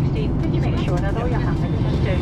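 Jet airliner cabin noise: the loud, steady low roar of the engines heard from inside the cabin, with indistinct voices over it.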